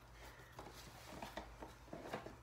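Faint handling noises, a few soft clicks and rustles, over a low steady room hum.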